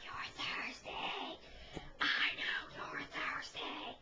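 A person whispering in short breathy phrases, with a pause a little over a second in.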